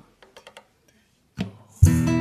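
A few faint taps and a soft knock, then near the end a five-string banjo and an acoustic guitar start playing together over a low, steady beat about twice a second.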